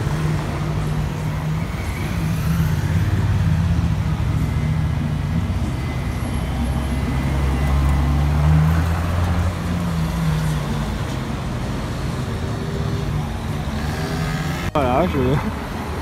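Ferrari LaFerrari's V12 running at low revs as the car pulls away slowly in traffic, a steady low drone that is loudest as it passes close about eight seconds in. Voices come in near the end.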